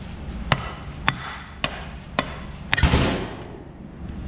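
Rubber mallet strikes on the metal reservoir case of an old power steering pump, about two blows a second, knocking the pump out past its dried-out, stuck O-ring seal. About three seconds in comes a heavier, longer clunk as the pump comes free of the case onto the bench.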